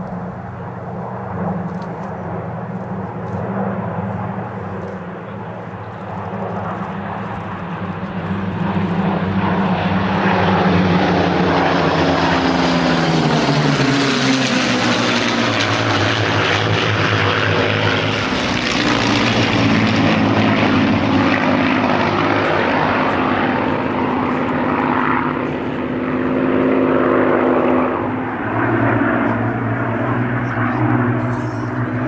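Four Supermarine Spitfires' Rolls-Royce Merlin V12 piston engines droning in a formation flypast. The sound swells louder about a third of the way in, and the engine note drops in pitch as the formation passes.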